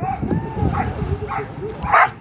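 A dog barking repeatedly, short sharp barks about twice a second. A higher gliding whine comes in the first half second.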